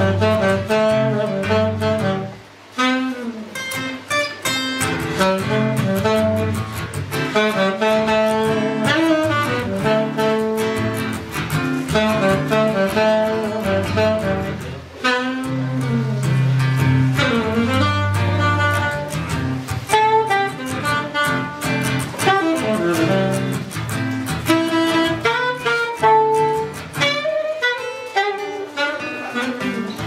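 Live saxophone playing a jazz samba melody over acoustic guitar accompaniment, with the guitar briefly dropping out a little after two seconds in.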